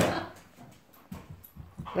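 A dog playing with a block of wood on carpet: a brief louder noise at the start, then faint scattered knocks and scrapes as it mouths and paws the wood.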